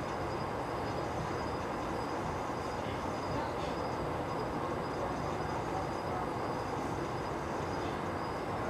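Steady low rumbling noise with no distinct events.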